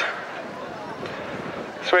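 Steady outdoor background noise with faint, indistinct distant voices.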